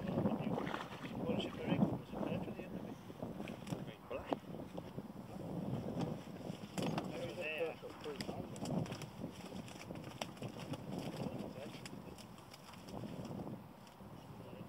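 Indistinct talk from a small group, with wind on the microphone and the wet rustle and splash of a fishing keepnet being drawn out of the river and handled into a weigh sling.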